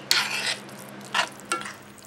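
A metal fork scraping and stirring through rice and gravy in a cast iron skillet: one longer scrape at the start, then two short scrapes a little after the one-second mark.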